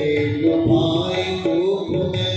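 Indian devotional music accompanying a raaslila dance: a long held melody note that bends slowly in pitch.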